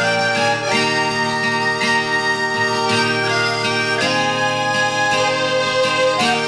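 Traditional Scottish instrumental folk music: a slow melody of long held notes on a reed instrument over a steady low drone.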